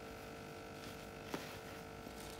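Faint steady room hum with one short click a little past the middle.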